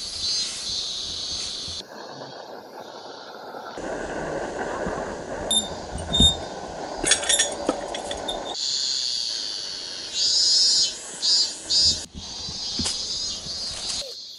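Insects buzzing in a high, steady drone that pulses in loud bursts near the end, heard across several clips cut together, with a few sharp knocks in the middle.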